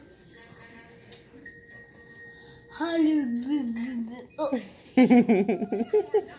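Wordless voice sounds, such as humming or cooing, rising and falling in pitch from about halfway, then louder short vocal sounds near the end. Faint television music with held notes plays underneath.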